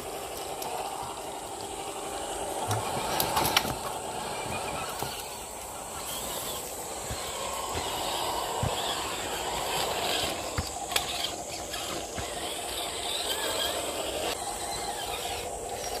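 Electric motors and geartrains of two RC rock crawlers, a GMADE GS02F Rubicon and a Twin Hammer clone, whining as they crawl over rock, swelling and easing with the throttle, with a few sharp clicks.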